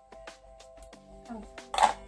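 Background music with a regular light tick throughout. Near the end comes a single sharp snip, the loudest sound: scissors cutting the tip off a vitamin E capsule.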